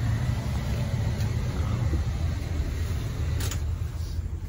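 Ford Econoline E-250 van's engine idling, a low steady rumble heard inside the cabin, with a brief click about three and a half seconds in.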